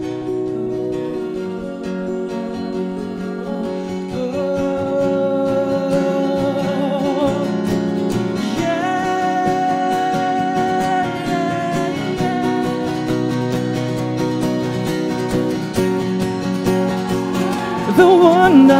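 Two acoustic guitars playing a slow song. About four seconds in, a male voice joins them, singing long held notes with vibrato, and it climbs higher partway through.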